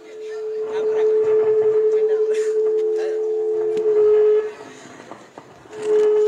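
A horn sounding two steady low notes together for about four seconds, then a short blast near the end, over voices on the ground.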